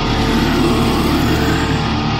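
Doom-death metal: heavily distorted guitar and bass holding sustained low notes.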